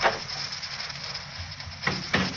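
Steady hiss of a 1940 radio broadcast recording, with a short sharp sound at the very start and another near the end.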